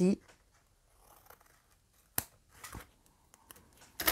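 Scissors cutting paper to trim off a corner: one sharp snip about two seconds in, followed by a few fainter clicks.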